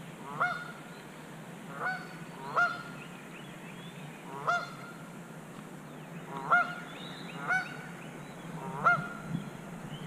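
A bird calling over and over: about seven short calls in ten seconds, each sweeping sharply up in pitch and then holding, standing out loudly against a low steady background.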